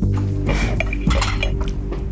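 Background music, with a fork clinking and scraping against a dessert plate about half a second to a second and a half in.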